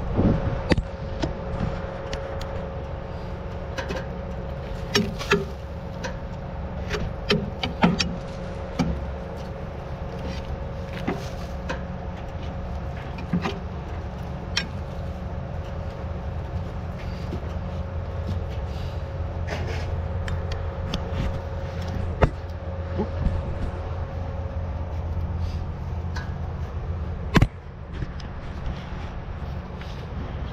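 Tractor engine running steadily at idle under scattered knocks and scrapes as clumps of mud and corn stalks are knocked off the blades of a disc harrow, with one sharp knock near the end.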